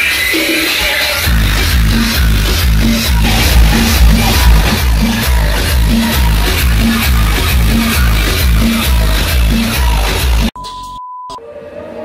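Electronic dance music played loud through a car's aftermarket audio system with subwoofers. The heavy bass beat drops out for about a second near the start and then returns. Near the end the music cuts off suddenly, followed by a short steady beep.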